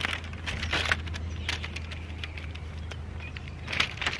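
Paper and film crinkling and rustling in the hands as a sheet of peel-apart Polaroid pack film and its paper leader are handled and folded, in scattered crackly bursts that are busiest in the first second and again near the end. A low steady hum runs underneath.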